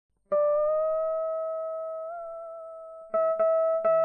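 Guitar opening a vọng cổ backing track: one plucked note rings and slowly fades for nearly three seconds, bending slightly up in pitch partway through. Three quicker notes follow near the end.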